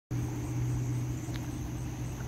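Water flowing into a concrete drainage channel, a steady low rumble, with insects trilling in a continuous high pitch above it.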